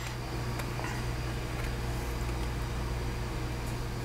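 Steady low hum with a faint hiss over it: background room noise.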